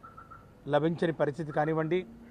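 A man speaking Telugu, starting after a short pause of under a second.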